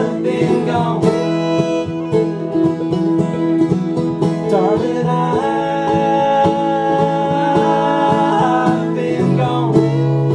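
Bluegrass string band playing an instrumental break: fiddle lead with sliding notes over strummed acoustic guitar and banjo.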